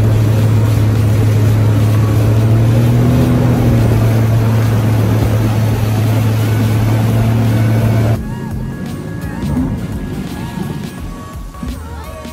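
A small motorboat's engine running steadily at speed, with a loud low hum and water and wind rushing past. The sound cuts off abruptly about eight seconds in, leaving quieter background sound.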